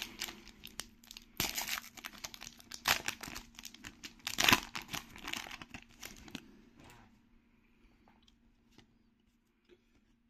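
Plastic trading-card booster-pack wrapper being torn open and crinkled by hand, a run of crackling rips that stops about seven seconds in.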